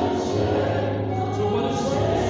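Gospel choir music: a choir singing over instrumental accompaniment with a steady low bass.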